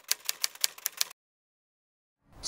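Typewriter keys clacking rapidly, about ten strikes a second, as a sound effect for text typing onto the screen. The clacking stops about a second in.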